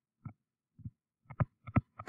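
Stylus tapping on a tablet screen as a word is handwritten: about seven short, irregular taps, louder in the second half.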